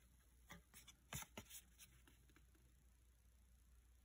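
Near silence, with a few faint, soft ticks and rustles in the first second and a half as cardboard trading cards are handled and one is flipped over.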